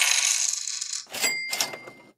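A stream notification alert sound effect, as for an incoming donation. A jingling rush is followed about a second in by a short burst with a steady ringing tone.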